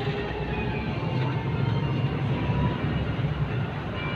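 Zhongtong city bus under way, heard from inside the cabin: a steady low rumble of engine and road noise.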